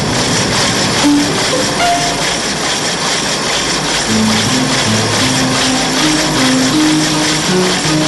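Soundtrack music over a steady mechanical rushing noise, the sound effect of a huge drill boring down through ice. A melody of held notes comes up about four seconds in.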